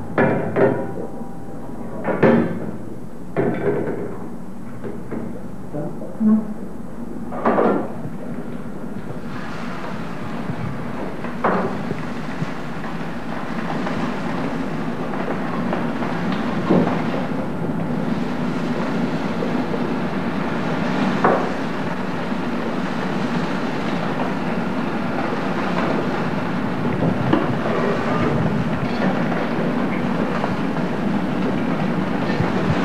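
Kitchen work at a stove: a handful of sharp knocks of metal pans and utensils in the first eight seconds or so, then a steady hiss that builds slowly, like food cooking on a hot griddle.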